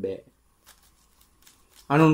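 A Buddhist monk preaching in Sinhala. His phrase ends just after the start and a pause of about a second and a half follows, broken only by a few faint clicks. Speech resumes near the end.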